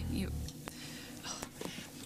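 Quiet speech, partly whispered. A low background note cuts off about half a second in.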